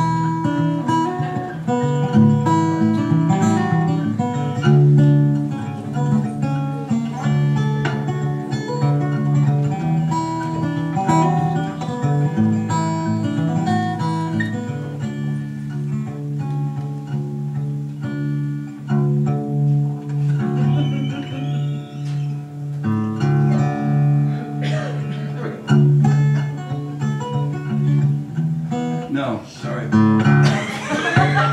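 Solo acoustic guitar playing an instrumental passage: picked melody notes over a low bass note that keeps pulsing.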